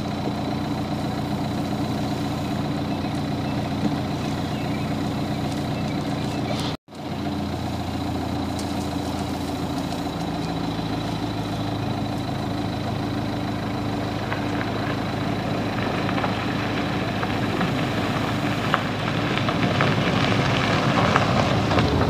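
A vehicle's engine idling steadily. It cuts out for a moment about seven seconds in, then carries on.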